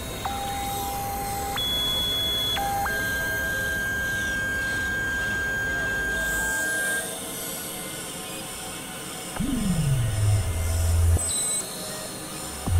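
Experimental electronic synthesizer music: single steady tones jump between pitches over a low rumbling drone, one of them held for about four seconds. About nine and a half seconds in, a deep tone glides downward and settles into a low buzz.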